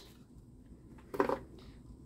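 Quiet room tone with one short murmured voice sound, like a hum or "mm", just over a second in.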